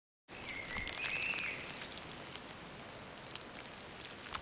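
Faint, sparse patter of drips, with a short two-step whistled tone about half a second in.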